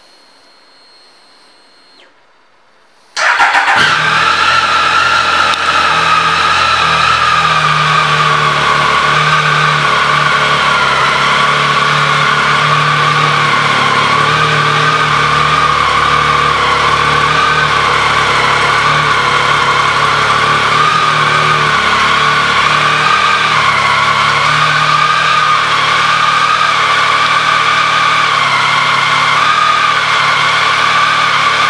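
2015 Triumph Speed Triple's 1050 cc inline three-cylinder engine comes in abruptly about three seconds in and then idles steadily.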